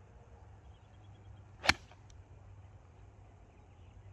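Golf club striking a ball in a full-speed swing: a single sharp crack of the clubface compressing the ball off the turf, about a second and a half in.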